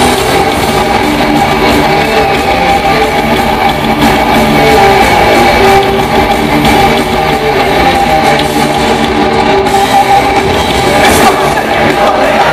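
Live heavy metal band playing a loud, steady instrumental passage: distorted electric guitars over drums, with no singing.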